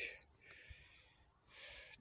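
Near silence, with a faint brief hiss near the end.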